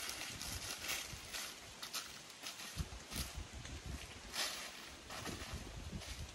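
Footsteps through dry fallen leaves: an irregular series of rustling steps.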